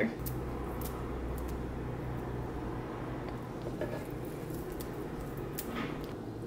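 Quiet kitchen sound of food being prepared: a few faint, irregular taps and clicks over a low steady hum.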